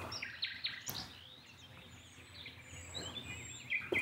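Small birds chirping faintly in the background, a scatter of short quick calls with no steady rhythm.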